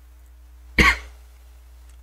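A man's single short cough, just under a second in.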